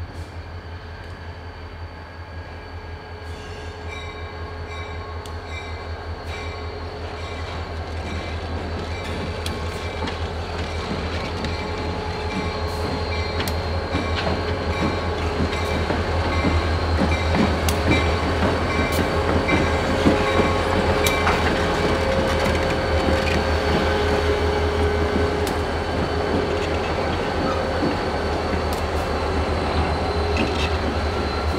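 Reading and Northern diesel-electric locomotive 3057 approaching and passing at low speed: its diesel engine runs with a steady deep hum and a steady high whine, growing louder as it comes close, with wheels clicking over the rails as it goes by.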